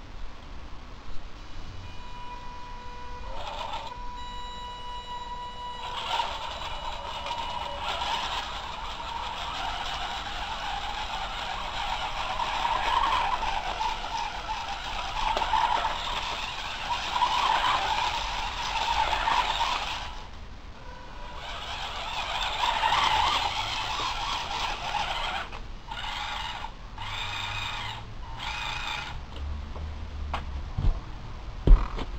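Electric drive motors of a small Theo Jansen-style walking robot run through an H-bridge, starting as a steady high whine and then becoming a rougher whirring as it walks. The sound stops briefly about two-thirds of the way through, starts again, and ends in several short stop-start bursts as it is steered. The leg mechanism on one side is jarring.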